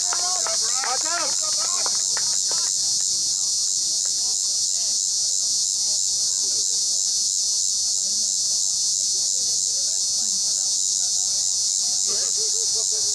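Steady, high-pitched insect chorus with a fast, even pulse. Some brief higher calls rise and fall over it in the first three seconds.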